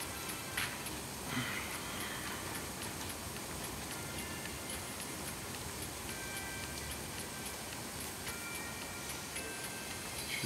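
Heavy rain making a steady hiss, with a phone lottery game's soft music, short electronic tones and a regular light ticking over it.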